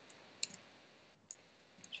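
Two faint, sharp clicks from working a computer, about a second apart, over quiet room hiss.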